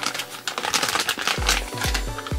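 A foil blind-bag packet crinkling as it is torn open and its contents pulled out, a quick run of small crackles, over background music whose bass beat comes in about halfway through.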